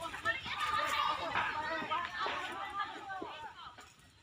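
Several people's voices calling out and talking over one another, indistinct, fading toward the end.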